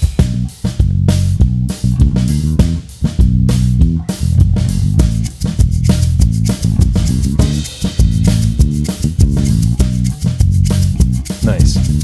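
A 1010music Blackbox sampler playing loops from a Brazilian lounge loop kit: a repeating bass line over drum and percussion loops, with loops being started by tapping the pad cells.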